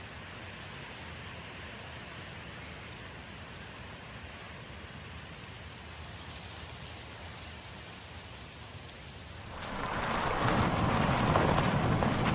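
A steady, even ambient hiss like rainfall. About ten seconds in, a louder rushing noise swells in and holds.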